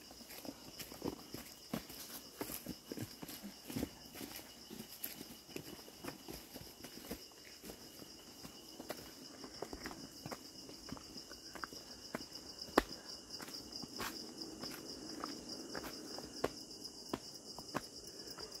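Irregular footsteps on a stone-paved forest path, with one louder knock about two-thirds of the way through, over a steady high-pitched insect drone.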